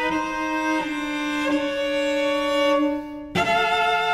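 Solo cello bowing sustained double stops: a held lower note sounds under an upper note that changes pitch twice. About three seconds in the sound briefly thins, then a new bowed chord begins.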